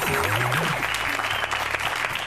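Studio audience applauding a correct quiz answer, with music playing under it.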